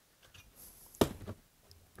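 Quiet handling of a cordless drill at a workbench: a few faint small ticks and one sharp knock about a second in.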